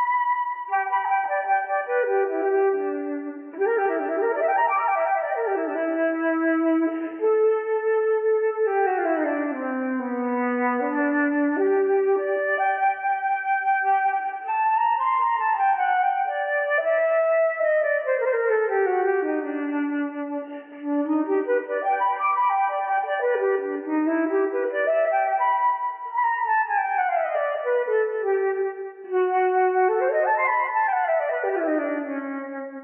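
Solo flute playing a free, unaccompanied improvised line: one melody that slides in wide, smooth sweeps up and down in pitch, broken by only a few short pauses.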